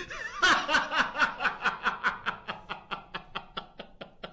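A man laughing: a soft chuckle that breaks about half a second in into a long, loud fit of laughter, several quick bursts a second.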